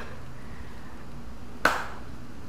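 A single sharp hand clap about one and a half seconds in, over quiet room tone.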